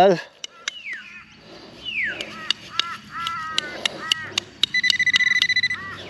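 Bird calls, a couple of falling notes and then a run of short arched notes, followed near the end by a metal-detecting pinpointer giving a steady high beep for about a second, pulsing rapidly as it is probed into the dug soil. Small clicks are scattered throughout.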